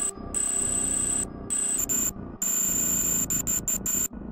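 Electronic intro music with glitch effects: a synthesized sound with a high, thin whine over it, chopped so that it cuts out and back in abruptly several times.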